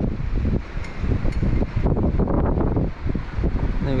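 Strong wind buffeting the microphone, a gusty rumble that rises and falls in level.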